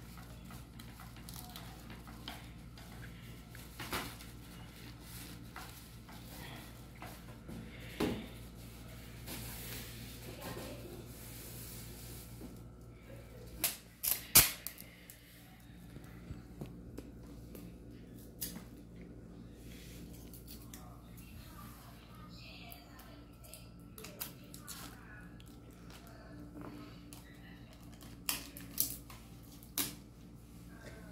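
Clear plastic tape being unrolled and pressed onto a bamboo kite spar and its thin garbage-bag plastic covering: scattered clicks, taps and crinkles, with the sharpest snaps about 14 seconds in and again near the end. A steady low hum runs underneath.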